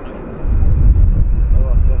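Deep rumble of a McDonnell Douglas F/A-18C Hornet's twin jet engines during a display pass, coming in suddenly about half a second in and staying loud, with a public-address commentator's voice over it.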